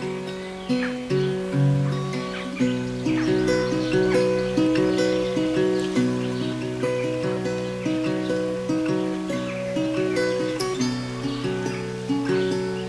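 Ashbury tenor guitar played acoustically: an instrumental line of picked notes, each ringing out, over a held low note.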